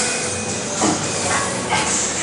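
Forceful hissing exhalations through the teeth from a lifter straining under a barbell on an incline bench press, in short bursts, with a brief strained vocal sound about a second in.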